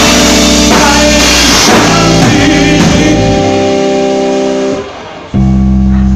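Live rock band playing a slow song: held guitar chords over bass and drums, with a singer's voice. About five seconds in the band drops out for a moment, then comes straight back in.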